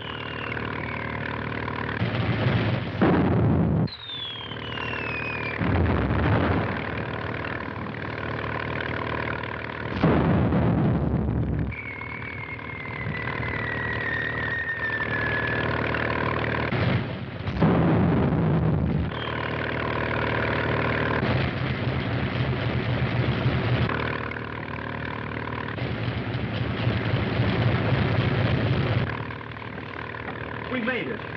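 A motor launch's engine drones steadily at full speed while artillery shells whistle down and burst around it. There are several explosions, with a falling whistle before some of them, the longest near the middle.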